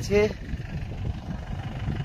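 Wind buffeting the microphone in an uneven, gusty low rumble, after a man's last spoken word at the very start.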